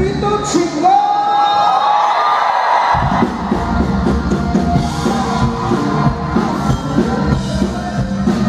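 Live Tejano band music with a singer. About half a second in, the bass and drums drop out and the voice carries on alone with long held, gliding notes. The full band comes back in about three seconds in.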